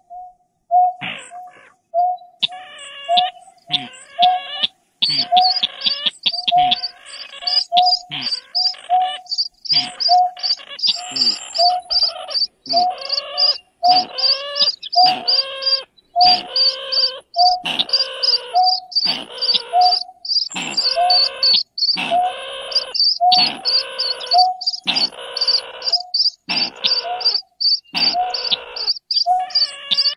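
Bird-call recording of greater painted-snipe (nhát hoa) and chàng nghịch calls mixed together: a low, hollow hoot repeated about one and a half times a second throughout, overlapped from about two seconds in by a second bird's longer, harsher calls with rapid high notes, the kind of lure played through a bird-trapping speaker.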